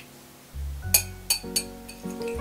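Background music with a steady bass line, over which a wire whisk clinks sharply against a glass mixing bowl three times as beating raw eggs begins.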